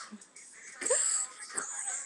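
A boy making a loud, wordless vocal noise about a second in: a wail that rises in pitch with a breathy hiss, followed by a shorter second cry.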